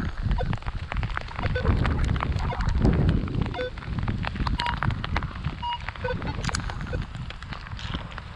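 Minelab X-Terra Pro metal detector giving scattered short beeps at several different pitches as the coil sweeps over bark chips. These are false signals, called 'pulsing', which the detectorist puts down to iron. Underneath is a low rumble of wind noise and rustling.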